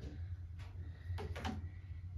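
Room tone: a steady low hum, with a few faint short clicks or taps about half a second in and again near the end.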